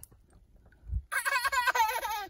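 A young child's high-pitched giggling, rapid and wavering in pitch, starting about a second in after a quiet moment.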